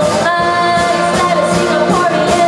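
Live pop song: a female vocalist singing held notes into a microphone, backed by a band with electric guitar and drum kit.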